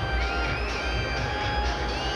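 Stadium atmosphere: music over the steady noise of a large football crowd in the stands.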